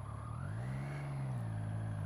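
Triumph Street Triple three-cylinder motorcycle engine running. Its pitch rises briefly, as with a bit of throttle, then falls back to a steady drone.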